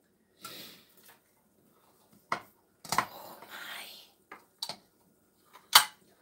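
A metal spatula scraping and clinking against a glass baking dish while serving soft bread pudding onto a plate: several short clinks and scrapes, with the loudest clink near the end.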